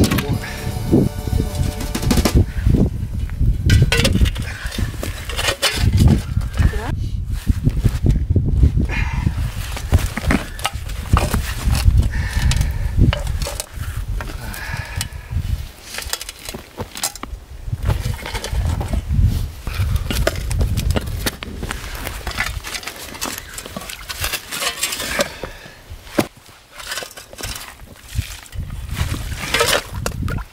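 A heavy stone planter being worked loose by hand and with a steel shovel: irregular scraping and knocking of the blade and stone in gritty soil, busiest in the first half.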